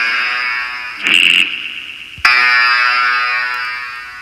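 Electronic synthesizer notes from an iPad synth app: a held note fading, a short bright burst about a second in, then a new note struck at about two seconds that slowly fades away.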